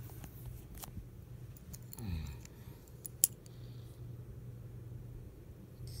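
A small metal souvenir ornament on a ring being handled: a few light clicks and one sharp click about three seconds in, over a low steady hum.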